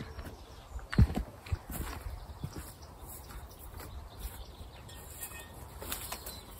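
Footsteps and a few short knocks as someone walks up across the allotment, irregular, with the loudest knock about a second in.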